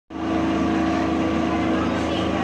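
Steady, unchanging drone of an idling vehicle engine.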